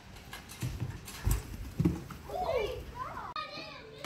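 Two dull thumps about half a second apart, a bicycle's wheels hitting a ramp and landing, among children's shouts. Background music comes in near the end.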